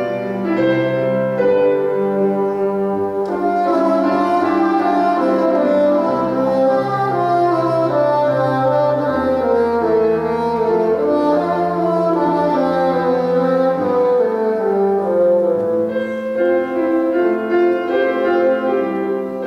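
Solo bassoon playing a slow, lyrical melody with piano accompaniment: the slow movement of a Classical-era bassoon concerto, with a piano standing in for the orchestra.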